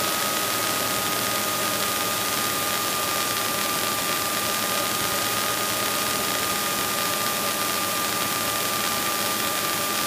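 Cockpit noise of a Cessna 210 on final approach: the piston engine and propeller running steadily under rushing air, with a thin steady whine.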